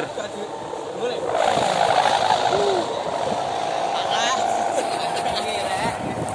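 A kite hummer droning steadily high in the air, its pitch wavering a little with the wind, with voices of people nearby.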